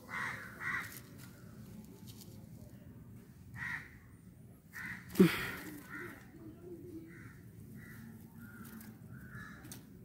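Crows cawing, a dozen or so short calls spread unevenly, with a single sharp thump about five seconds in.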